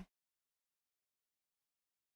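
Near silence: complete dead quiet with no room tone, just after a spoken word cuts off at the very start.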